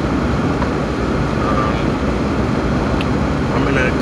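Steady, mostly low-pitched road and engine noise inside the cabin of a Jeep being driven.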